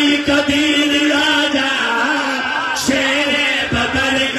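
A male reciter chanting in long held melodic notes into a microphone, amplified over loudspeakers, with a short break in the line about three seconds in.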